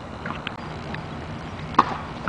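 Steady outdoor background noise with a couple of faint ticks, then a single sharp knock near the end.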